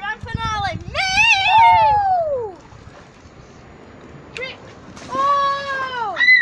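Children squealing as water splashes in a small inflatable paddling pool. A long high squeal in the first two seconds falls in pitch, and a shorter call comes near the end.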